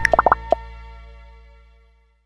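Closing sting of an advert's music: four quick bubbly pops in the first half second, then a low held note fading out over about a second and a half.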